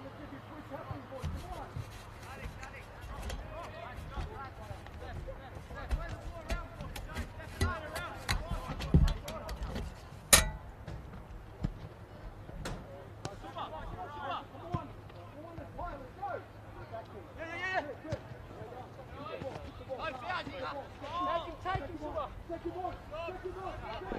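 Players' voices calling out across an open football pitch, with several sharp thuds of a football being kicked. The loudest kick comes about ten seconds in.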